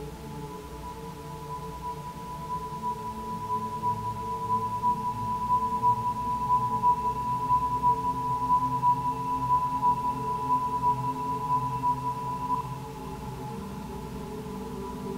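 Crystal singing bowl sounded with a mallet: one sustained high ringing tone that swells in and wavers in a steady pulse, then breaks off with a small click about a second before the end. Beneath it runs a low synthesizer drone.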